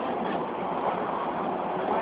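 Steady rushing noise of a moving train heard from its open doorway, the running noise of the carriage on the rails with no sudden knocks or clatters.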